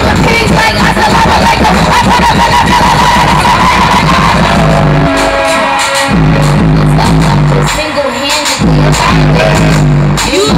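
Loud live concert music over the stage PA, with a steady bass line that drops out briefly about six seconds in and again about eight seconds in.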